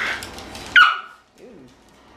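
A small dog's short, high-pitched bark just under a second in, the loudest sound, after a shorter burst of sound at the start.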